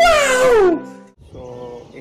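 A man's loud, high-pitched cry that glides down in pitch over under a second, over steady background music; after it, a man talking more quietly.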